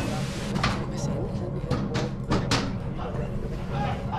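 Horror-trailer sound design: a low, steady drone under a run of sharp hits and whooshes, the loudest pair coming a little over two seconds in.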